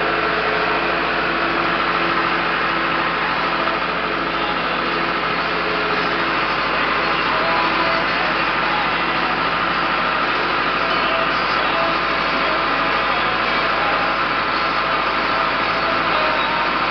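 Tractor engine running steadily at a constant speed, heard from the operator's seat.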